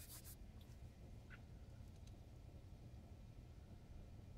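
Near silence: room tone, with a faint click at the very start and another, fainter one about a second later.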